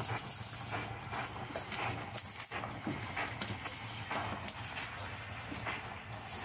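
Irregular scraping, knocking and peeling as an old glued vinyl floor tile, softened with steam, is pried up with a scraper, over a steady low hum.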